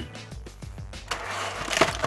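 Clear plastic blister tray crinkling as it is handled, starting about a second in, over quiet background music.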